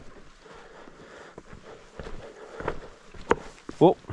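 A hiker's footsteps on a rocky, muddy trail: a few separate scuffs and knocks over a faint hiss. A sharper knock of a loose rock shifting underfoot comes near the end.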